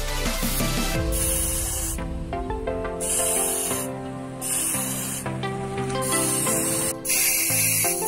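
Aerosol spray paint can hissing in about five short bursts of roughly a second each, spraying paint onto a motorcycle helmet, over background music.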